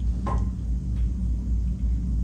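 A steady low rumble, the background hum of a room with an amplified sound system.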